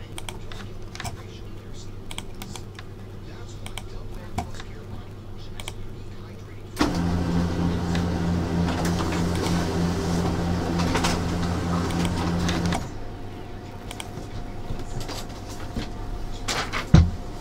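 Computer mouse clicks and keystrokes, then about seven seconds in an office printer starts and runs with a steady hum for about six seconds before stopping, followed by more scattered clicks.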